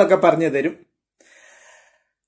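A man's voice ends a phrase under a second in, then after a short silence comes a brief, faint intake of breath.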